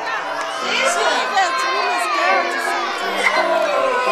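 A room full of children shouting and cheering excitedly, many high voices at once.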